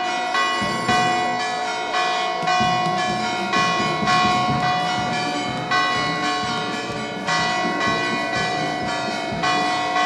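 Church bells pealing in quick festive ringing, about two strikes a second, each strike ringing on and overlapping the next.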